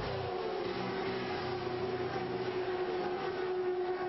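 Race car engine note that drops in pitch at the start and then holds one steady pitch.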